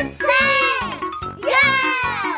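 Children and a man cheering together in two long shouts, over upbeat children's background music with a jingling tune.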